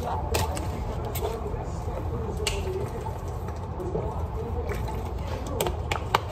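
A few sharp clicks and taps from a small container being handled, over a low steady hum and a faint murmur.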